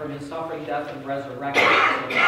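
A person's voice speaking, then a loud cough about a second and a half in.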